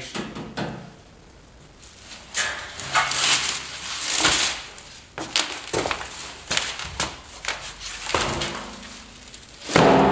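A chrome truck bumper being handled in its cardboard packing: plastic wrap rustling, cardboard scraping and metal knocks, ending in a loud thunk near the end as it is set down.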